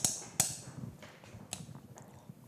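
A kitchen utensil clicking against a glass mixing bowl: two sharp clicks in the first half-second, then a few fainter taps.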